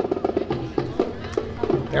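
Drum corps music from a marching parade unit: a quick, steady run of short drum beats.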